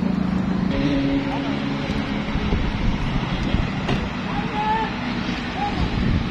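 Wind buffeting a phone microphone over outdoor street noise, with faint voices in the background.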